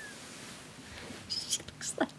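Quiet whispered speech, breathy and hushed, with sharp hissing s-sounds about a second and a half in.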